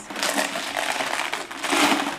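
A jar full of buttons being tipped and handled, the buttons sliding and rattling against each other and the jar in a dense clatter that grows louder near the end.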